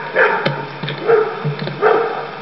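A dog barking: three short, loud barks spread across the two seconds.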